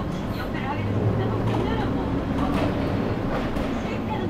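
City bus driving along, heard from inside at the front: engine and road noise with a low steady drone that swells from about one to three seconds in.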